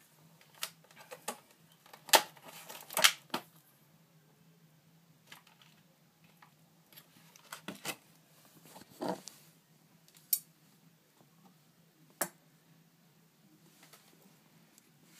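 Handling noise from taking a feeder cricket out of its box: scattered sharp clicks and taps, the loudest about two and three seconds in and two more near ten and twelve seconds.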